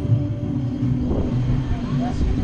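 Wind rushing over the microphone as the giant swing moves, with voices in the background.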